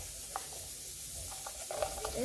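Quiet wet stirring of a thick, creamy homemade slime mixture of glue, liquid detergent and talc in a plastic cup, a stick scraping through it with a few small ticks.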